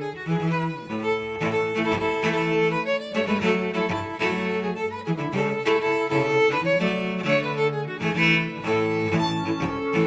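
A string quartet playing an arrangement of a Danish traditional folk tune: bowed violin, viola and cello together, with lower notes recurring in short repeated blocks under held notes above.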